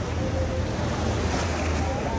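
Small waves washing onto a sandy shore, with wind rumbling on the microphone and faint voices from a crowded beach.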